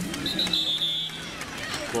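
A referee's whistle blows one high blast of under a second, shortly after the start, signalling the play dead after the tackle.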